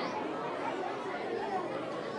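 Steady, indistinct chatter of many children's voices, a murmur with no single speaker standing out.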